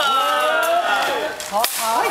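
A person's long, falling shout, followed near the end by one sharp crack of a rattan practice weapon striking.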